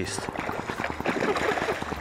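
A hooked bass thrashing and splashing at the surface in shallow water at the bank, a steady churning of water.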